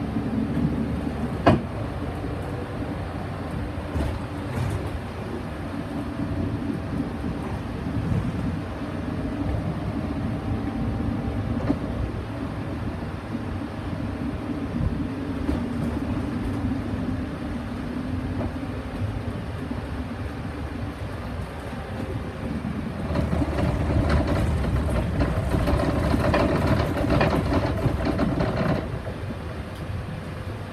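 Solaris Urbino 15 city bus heard from inside at the front while driving: steady engine and road noise. There is a sharp click about a second and a half in, and the sound grows louder for several seconds near the end.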